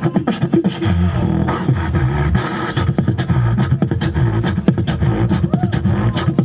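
Beatboxer performing into a handheld microphone: quick rapid-fire clicks and snare-like hits, with a deep bass tone coming in under them about a second in and running on.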